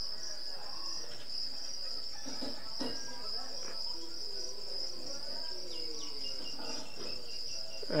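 Insects trilling steadily in the background: one continuous high-pitched note with an even, fast pulse.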